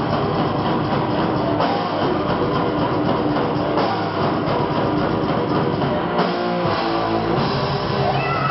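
Thrash metal band playing live: distorted electric guitars over a drum kit, loud and dense, the riff shifting every couple of seconds.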